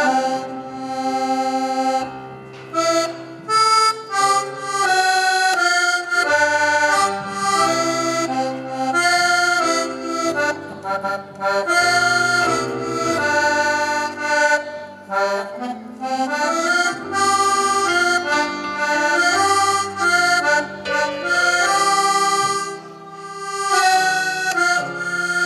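Small piano accordion played solo: a lively melody of quick changing notes over bass notes, with short breaks between phrases.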